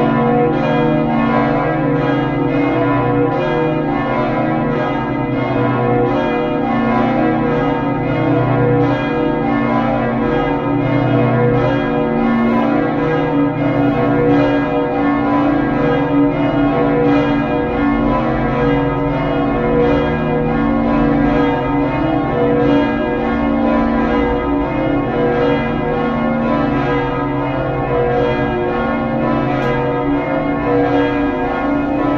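Swinging church bells ringing continuously in full peal, a three-bell ring tuned to B, C sharp and D sharp and rung in the falling-clapper (battaglio cadente) style, with the strokes coming evenly about two to three a second.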